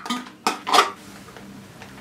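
Foil lid of a metal snack canister being pulled open: two short, sharp crackling tears about half a second apart, then quiet.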